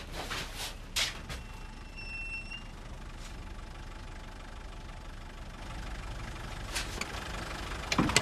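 Low, steady rumble of a vehicle engine idling, with a couple of sharp clicks in the first second and a few more near the end.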